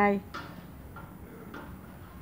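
A woman's spoken word ends right at the start, followed by a low street background with faint distant voices and a few light ticks.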